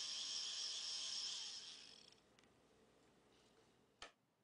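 Small geared-down DC motor running, a steady high-pitched whine from the motor and its gearbox that dies away about two seconds in.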